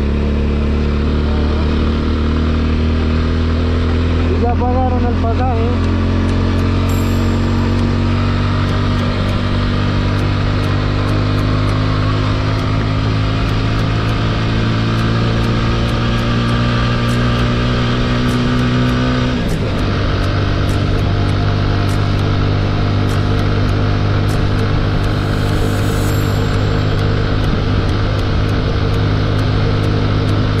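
TVS Apache 200 single-cylinder motorcycle engine running under way. Its pitch climbs slowly as the bike gathers speed, drops sharply about two-thirds of the way through with an upshift, then holds steady.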